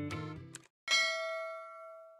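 Background music trails off. About a second in comes a single bell-like ding, a notification-bell sound effect for a subscribe-button animation, which rings and fades away.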